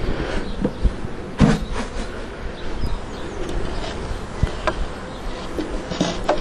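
Honeybee swarm buzzing under a steady rumble of wind on the microphone, with a few knocks as the swarm box is handled, the loudest about one and a half seconds in.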